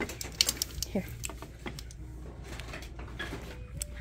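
Glazed ceramic canister and its lid clinking and knocking as they are handled, a scatter of short sharp clicks.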